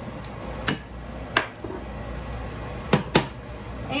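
Four sharp clinks of a utensil knocked against a ceramic bowl while flour is added to it: two spaced about a second in, then a quick pair near the end, over a steady low hum.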